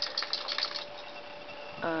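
A dog shaking its head, ears flapping: a quick rattling run of about ten light clicks lasting under a second.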